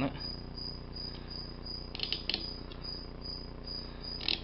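A knife blade scraped across the brass side pins of a Schlage Primus lock cylinder to scribe marks on them: a few faint short scratching clicks, strongest about two seconds in. Under it a steady low hum and a faint high whine that pulses on and off.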